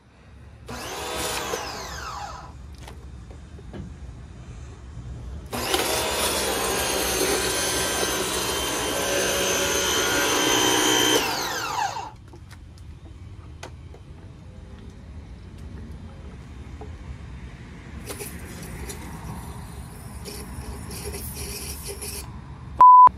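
Portland 1750 PSI electric pressure washer switched on briefly about a second in and winding down, then running steadily for about six seconds from a little past halfway before it is switched off and its motor spins down.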